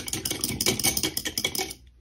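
A paintbrush being rinsed in a water cup, swished and knocked against the cup's sides in a rapid run of small clicks and clinks that stops shortly before the end.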